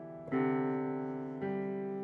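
Digital piano played slowly in improvised chords: one chord struck about a third of a second in and another about a second and a half in, each left to ring and fade.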